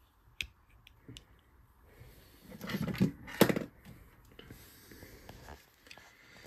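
Light clicks and knocks of a power-supply circuit board and multimeter test probes being handled, with a louder knock about three and a half seconds in.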